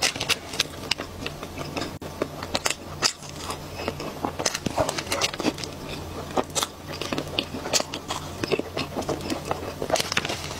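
Close-miked chewing of a cream-filled chocolate pastry: a dense run of wet mouth clicks and smacks, over a steady low hum.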